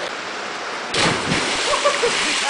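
A person jumping feet-first into a deep river pool: a loud splash about a second in, over the steady rush of flowing water.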